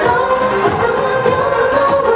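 A Cantonese pop song playing, with singing over a full backing track and a steady beat.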